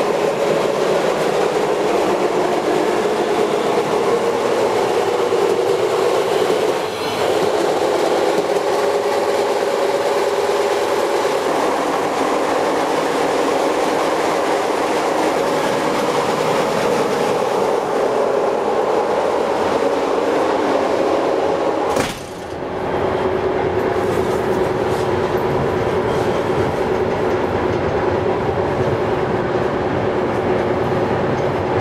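Passenger train running, heard from inside the carriage: a steady rumble and drone with a held tone. Near the end of the first third it dips briefly, and about two-thirds of the way in there is one sharp knock.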